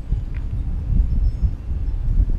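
Wind buffeting an action camera's microphone: an uneven low rumble with no clear tone.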